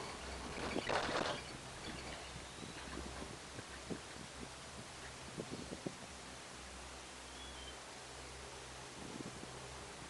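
Quiet ride inside a moving cable-car gondola: a low steady hum, a short rustle about a second in, and a few light clicks in the middle.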